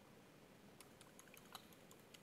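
Faint computer keyboard key presses: a quick, irregular run of clicks starting a little under halfway in, as characters are deleted from a text field. The clicks sit over near silence.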